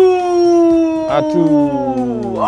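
A man's voice holding one long, drawn-out note that slowly falls in pitch, with a second, lower voice joining in about one and a half seconds in.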